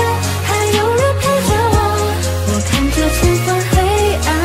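Mandarin pop music playing: a melody line over steady bass notes and a drum beat.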